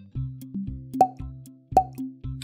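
Cartoon-style background music with a regular run of short notes, cut through by two sharp pop sound effects, about a second in and near the end.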